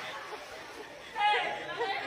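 Several people's voices chattering and calling out, quiet at first and then rising into a louder burst of voices about a second in.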